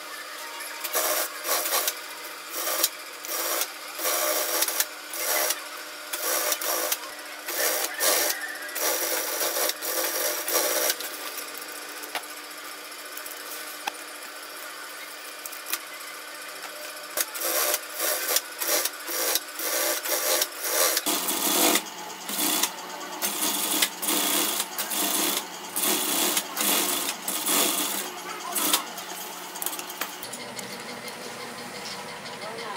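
Brother industrial sewing machine stitching in short bursts, each about half a second to a second long, as the bag is fed through. It pauses for several seconds midway while the work is turned, then starts again.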